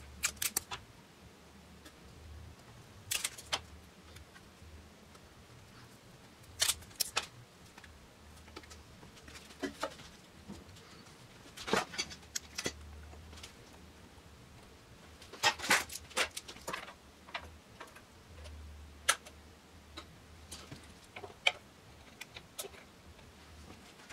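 Workshop handling sounds: short clusters of sharp clicks and taps a few seconds apart, from fitting a plywood jig and locking C-clamps onto a wooden instrument neck, with the densest run of clicks about two-thirds of the way in. A faint low hum runs underneath.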